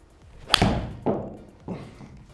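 A Titleist T300 iron striking a golf ball off a hitting mat: one sharp crack about half a second in that rings away, followed by a softer thud about half a second later.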